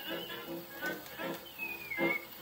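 Old 1920s dance-band music played from a Victor 78 rpm shellac record on an acoustic phonograph, with notes struck about twice a second over held chords and faint record-surface hiss. Near the end a high note slides downward.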